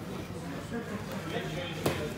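Indistinct voices talking in a gym hall, with one sharp slap near the end as the grapplers hit the mat.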